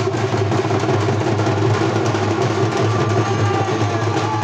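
Festival drums played loud and fast without a break.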